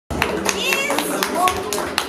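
Crowd clapping together in a steady rhythm, about four claps a second, with voices and shouts from the audience mixed in.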